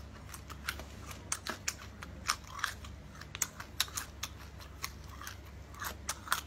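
A person chewing a cooked scorpion, its crisp shell giving a string of irregular crunches.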